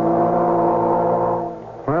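A ship's horn sounding one long, steady blast, the all-ashore signal before the ship sails, fading out about a second and a half in.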